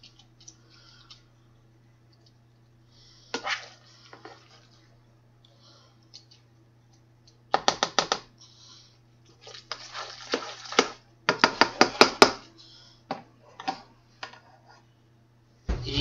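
A spoon stirring macaroni and cheese in a metal saucepan: scrapes and knocks against the pot, coming in short runs of quick taps that grow denser in the second half. A steady low electrical hum sits underneath.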